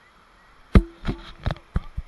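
A quick run of about five sharp, close knocks in just over a second, the first the loudest: the body-worn action camera being bumped and jostled as the view swings down to the rocks during a scramble.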